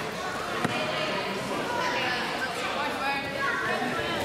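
Indistinct chatter of several voices in a large gym, with a single sharp thud about two-thirds of a second in.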